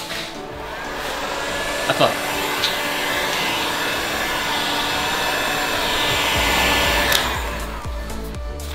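Handheld electric heat gun blowing steadily while warming vinyl wrap film, with two brief ticks about two seconds in and near the end.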